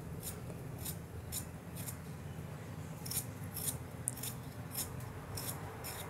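A hand-held metal vegetable peeler scraping the skin off a raw potato in short, quick strokes, about two a second.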